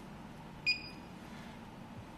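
A single short high electronic beep from a 48-watt nail curing lamp, signalling the end of its 30-second curing cycle.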